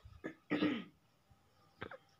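A short, sharp cough from the female narrator about half a second in, with a brief faint mouth sound just before it and another short vocal sound near the end.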